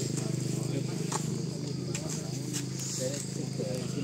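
A motorcycle engine running steadily and fading away over the first three seconds, with people talking faintly in the background.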